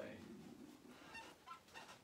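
Near silence: room tone after a man's voice trails off, with a few faint, short sounds in the second half.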